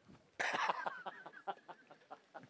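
A burst of laughter about half a second in, trailing off in short breathy pulses.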